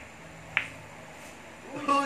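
Pool balls clacking once, sharply, about half a second into the shot on a pool table, with a fainter tap just at the start. A man's voice begins near the end.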